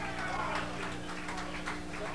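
Steady electrical hum from the band's amplifiers and PA, with scattered faint knocks and murmur from the crowd in the pause between songs.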